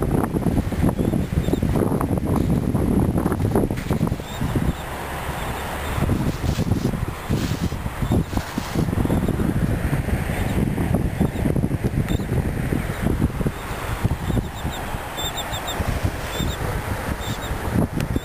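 Wind buffeting the camera's microphone outdoors, an uneven gusty rumble that rises and falls without let-up.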